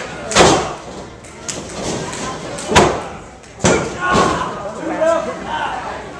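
Three sharp impacts in a pro-wrestling ring, the first the loudest, about a second in, the others near the middle, as a wrestler works over his downed opponent. Voices call out after the third hit.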